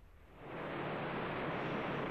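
Lava fountain erupting: a steady rushing noise that fades in about half a second in.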